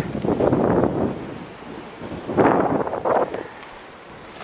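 Wind buffeting the camera microphone in gusts, with two stronger surges, the second about two and a half seconds in, then easing off.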